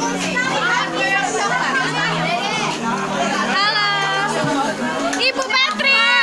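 Several teenage girls' voices chattering and talking over one another, with no single clear speaker, and a few high, lively exclamations in the second half.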